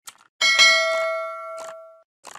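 Subscribe-button animation sound effect: a short mouse click, then a bell ding with several ringing tones that fades over about a second and a half, and another click near the end.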